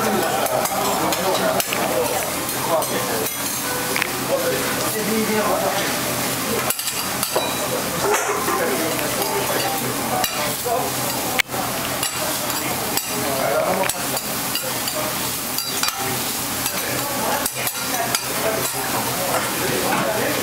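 Okonomiyaki and noodles sizzling steadily on a steel teppan griddle, with metal spatulas repeatedly scraping and clicking against the hot plate, one sharp click about halfway through.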